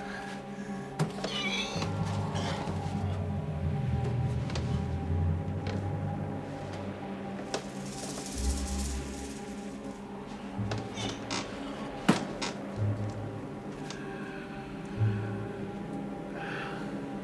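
Film score of sustained low tones, broken by a few sharp knocks, the loudest about twelve seconds in.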